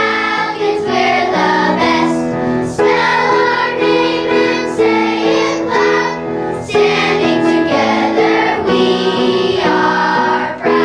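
A choir of elementary-school children singing a song together, with notes held and changing every second or so.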